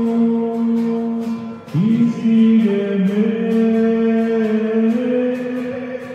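Church hymn sung in slow, long-held notes over a strummed guitar, a new phrase beginning about two seconds in; the entrance hymn of the Mass.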